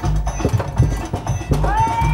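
Music with a steady beat playing from the Rent-A-Dog arcade treadmill machine, over a run of clattering knocks from the moving belt and the walking mechanical dog. Near the end a whining tone rises and holds.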